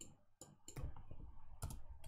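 Light, sharp clicks from computer input while a slide is annotated and advanced: a few spaced single clicks, then two close together near the end.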